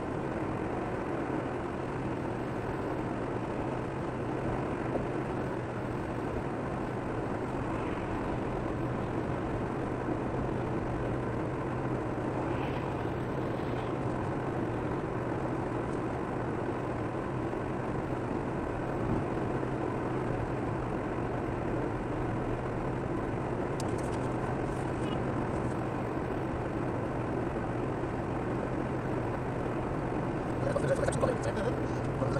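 Steady road noise heard from inside a car cruising at about 88 km/h: tyre rumble on the expressway with a constant low engine hum.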